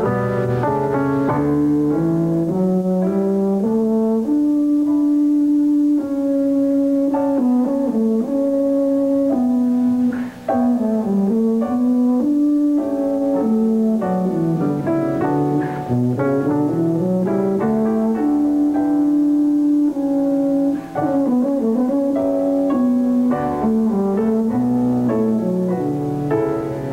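Solo tuba playing a slow melody with long held notes, accompanied by piano, with two short breaks in the line about ten and twenty-one seconds in.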